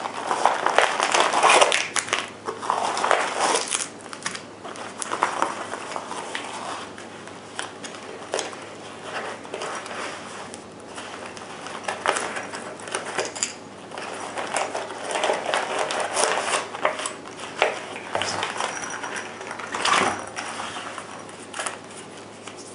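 Plastic wrappers and sealed packets crinkling and rustling as they are handled and pulled out of a soft first-aid kit pouch, loudest in the first few seconds, then in short bursts with quieter gaps.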